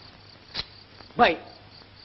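Faint crickets chirping on an old film soundtrack, with a single short click about half a second in.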